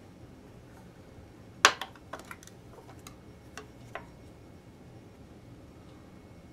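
Small hard clicks and taps of a plastic cavity cover plate and screwdriver being handled against the back of an electric guitar's body as the plate is tried in place. There is one sharp click about a second and a half in, then a handful of lighter ticks over the next two seconds.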